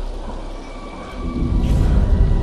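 Rain and thunder storm sound in a song intro. A held high synth tone enters and deep bass comes in loudly just over a second in as the beat starts.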